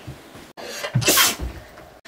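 A child sneezing once, a sharp burst about a second in.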